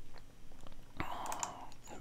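A few light, scattered clicks of a computer keyboard and mouse, the sharpest about a second in, followed by a short soft hiss.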